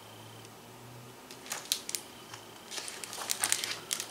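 Paper rustling as a page of a hardcover picture book is turned: a few soft crinkles, then a quicker cluster of them near the end.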